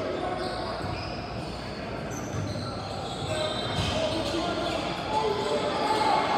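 A basketball bouncing on a hardwood gym floor, with players' and spectators' voices echoing in the large hall.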